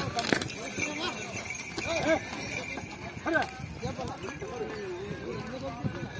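Men calling out and talking around Khillar bulls, with the clatter of the bulls' hooves on dry ground and a few short knocks.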